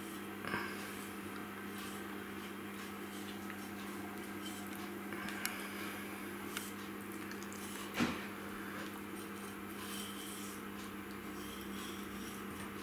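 A knife scoring the fat cap of a sous-vide-cooked porterhouse steak on a wooden cutting board: quiet slicing with a few soft knocks, over a steady low hum.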